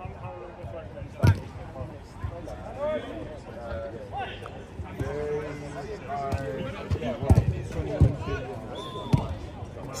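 Football players shouting and calling to each other in the distance, with several sharp thuds of the ball being struck. The loudest thud is about a second in, and a few more come near the end.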